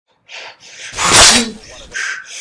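A man's loud, harsh shout, loudest about a second in, done as a Wolverine-style battle cry.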